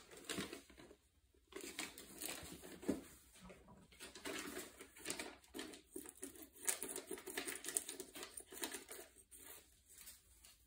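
Irregular rustling and crinkling, like packaging being handled, mixed with small handling knocks and scrapes on a workbench.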